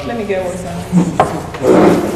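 Wooden dining chair moved as someone gets up from the table: a couple of wooden knocks about a second in, then a loud scrape of the chair against the floor near the end.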